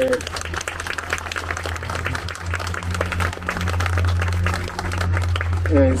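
A small group of people applauding, many hands clapping, over a low steady hum.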